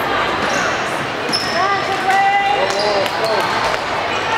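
Volleyballs bouncing on a hardwood gym floor, a run of short knocks echoing in a large hall, with players' voices calling out in the middle.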